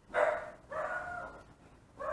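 A dog barking twice, high-pitched: a short bark right at the start, then a longer one about a second in.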